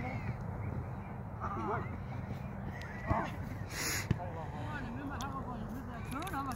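Distant shouts and calls from soccer players across an open field, over a steady low background rumble, with a single sharp knock just after four seconds in.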